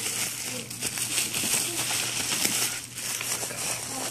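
Bubble wrap crinkling and crackling as it is handled by hand, in a busy run of irregular rustles.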